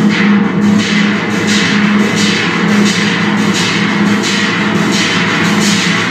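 Moog Sub 37 analog synthesizer played through a FairField Circuitry Meet Maude analog delay pedal. It holds a steady bass drone under a bright pulsing pattern that repeats about two to three times a second.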